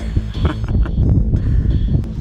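Wind buffeting the microphone, a loud, uneven low rumble.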